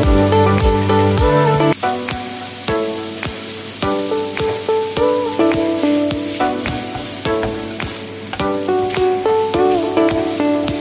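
Diced bacon sizzling in a nonstick frying pan, with small pops, as it is stirred with a spatula; background music plays over it.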